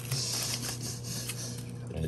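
Foil-lined potato chip bag crinkling and rustling as chips are shaken out of it onto a sandwich, the crinkle strongest in the first half with a few small clicks of chips landing.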